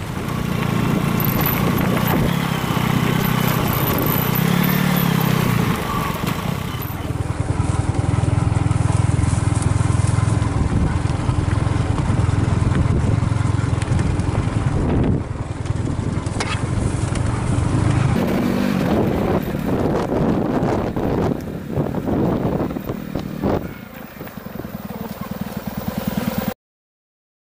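Motorcycle engine running as it is ridden over a rough dirt track, its pitch rising and falling with the throttle. After about 18 seconds the sound turns uneven, with scattered knocks, and it drops in level over the last few seconds as the bike slows.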